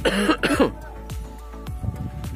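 Two short, loud coughs about half a second apart, over steady background music.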